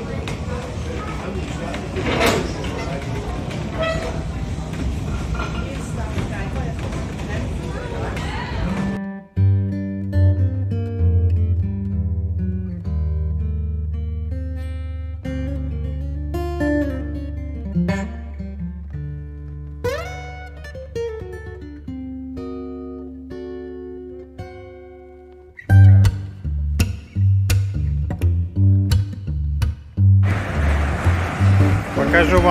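Background music with plucked guitar-like notes over held bass notes, gaining a stronger beat near the end. It comes in abruptly about nine seconds in, after a stretch of noisy, unclear location sound.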